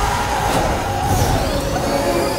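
Sci-fi film soundtrack: a sustained tone that slowly falls in pitch over a low rumble and hiss.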